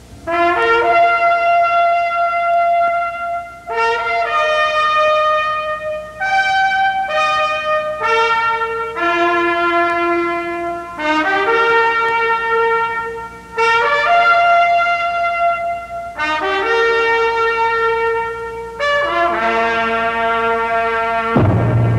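Brass ensemble playing a slow, loud fanfare of held chords, a new chord every two to three seconds with short breaks between.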